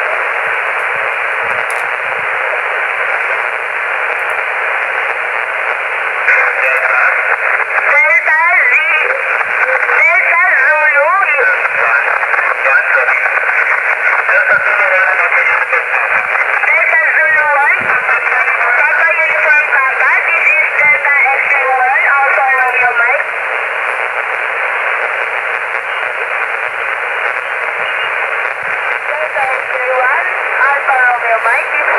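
HF amateur transceiver receiving lower sideband on 7.085 MHz in the 40-metre band: steady, narrow-band static hiss, with a weak voice transmission coming through from about six seconds in until a little past twenty seconds, then hiss alone again.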